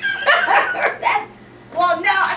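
A woman laughing loudly in high, quick bursts through the first second, a short lull, then laughter or talk picking up again near the end.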